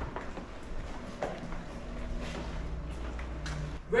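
A few light knocks and handling noises as a plastic infant car seat is picked up and carried, over a steady low room hum.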